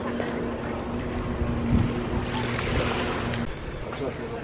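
A steady low motor hum over wind and water noise, with a brief low thump near the middle; the hum stops short about three and a half seconds in.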